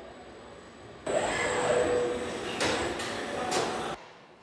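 Industrial robot arm fitting a windscreen with its pneumatic suction-cup gripper: a steady machine whine with hiss that starts suddenly about a second in, with two sharp knocks in the second half.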